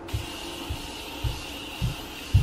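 Pump bottle of makeup setting spray misting the face: a steady hiss with soft low thumps about every half second.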